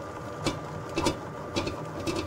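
Stand mixer running, its dough hook kneading bread dough in a stainless steel bowl. The motor gives a steady whir, with a soft knock about every half second as the dough turns.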